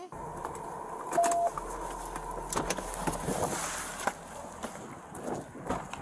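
A car driving, heard from inside: a steady low rumble under a faint steady hum, with a short beep about a second in and a few scattered clicks.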